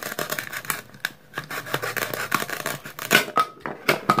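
A plastic toy knife cutting through a velcro-joined toy tomato, the velcro crackling and ripping in quick clicks. The loudest rip comes a little after three seconds in, as the halves pull apart.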